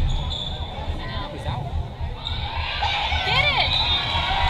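Indoor volleyball rally: the ball is struck with sharp smacks a couple of times, and sneakers squeak on the hardwood gym floor near the end, over a chattering crowd in the bleachers.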